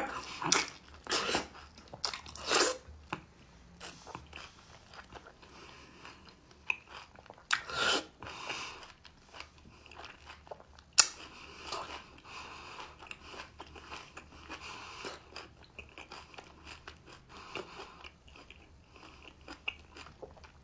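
Close-miked biting into a peeled piece of mango, then chewing. Several louder bites come in the first three seconds, with single louder ones about 8 and 11 seconds in, and quieter chewing between them.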